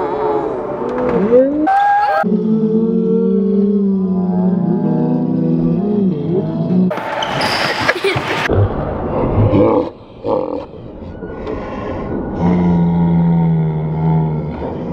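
A group of children yelling and shouting excitedly with long drawn-out cries, and a burst of loud, noisy shouting about halfway through.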